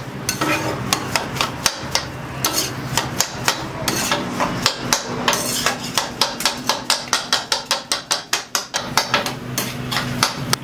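A metal spatula chopping sliced mushrooms on a steel flat-top griddle: repeated sharp metal-on-metal clacks, quickening to about four a second near the end, over a low steady hum.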